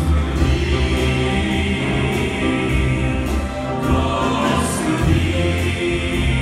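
Male vocal group singing a slow hymn in harmony through microphones, accompanied by electric guitar and keyboards over long sustained bass notes.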